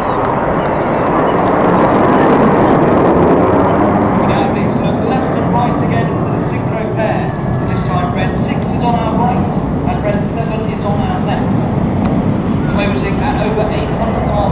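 Roar of display jets, loudest about two to three seconds in, then easing. People talk close by through the second half.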